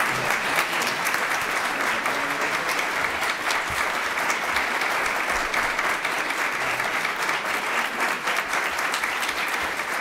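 An audience of several dozen clapping steadily and warmly, many hands making a dense patter with no break.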